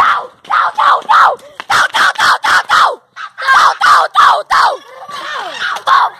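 Several children shrieking and yelling in quick short bursts, three or four a second, each falling in pitch, with a short break about three seconds in.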